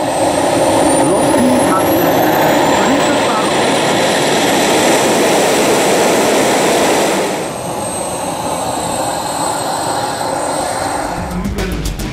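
Small model-jet turbine engine of a radio-controlled F-104S Starfighter starting up: a high whine rising steadily over the first several seconds over a loud rush of air. The level drops about seven and a half seconds in as it settles, and music comes in near the end.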